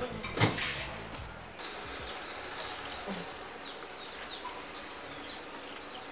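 Small birds chirping over and over in short, high, falling chirps, several a second. A single sharp knock comes about half a second in.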